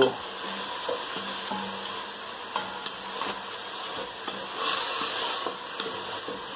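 Rice, onion and red wine sizzling in a pot over high heat while a wooden spatula stirs and scrapes through them, the wine cooking off into the toasted rice.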